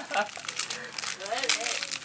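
Plastic food wrapper crinkling as a bun is handled, a run of short sharp crackles.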